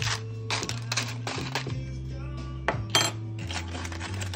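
A metal spoon clinking and scraping against a glass baking dish as tortilla chips and shredded cheese are moved about in it, with several sharp clinks, the loudest a little before three seconds in. Background music with a steady bass line plays underneath.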